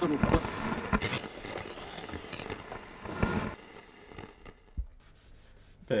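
Vintage tabletop radio being tuned across the dial: crackling static with sharp clicks and broken snatches of voices between stations, breaking off about three and a half seconds in and leaving a quieter hiss.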